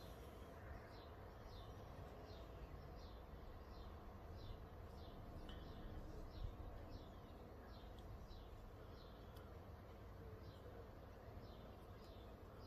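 Near-quiet background with a faint bird calling in short, repeated falling chirps, about two a second, over a low steady rumble.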